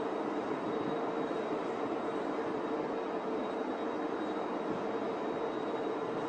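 Steady droning noise with a constant low hum held underneath it and no clear rhythm or breaks.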